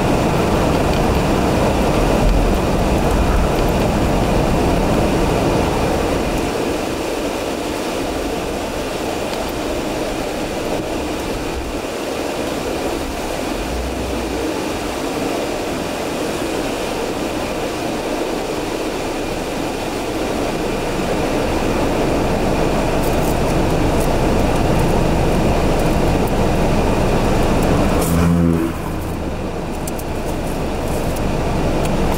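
Steady road and engine noise heard from inside a car driving in slow city traffic. Near the end the noise drops off abruptly as the car comes to a stop in the queue.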